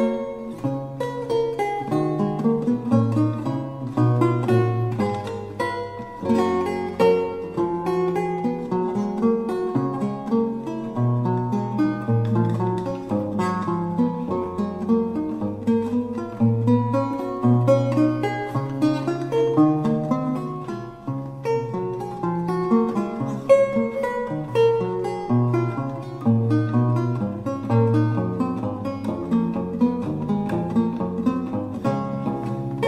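Solo lute music: a Renaissance piece of plucked notes over a moving bass line.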